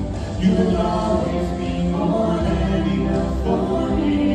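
A vocal trio, two women and a man, singing held notes in harmony into handheld microphones, starting a new phrase about half a second in.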